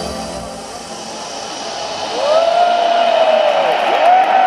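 Electronic trance music thinning out into a quiet breakdown, with crowd noise underneath. About two seconds in, a spectator close to the microphone gives a long whoop, a 'woooo' that swoops up, holds and falls away, and starts another right at the end.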